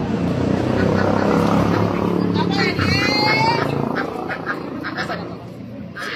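Busy sidewalk street noise with people talking nearby, and a duck quacking.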